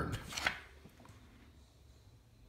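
Handling noise: a few light taps and rustles in the first half second, a single faint click about a second in, then quiet room tone.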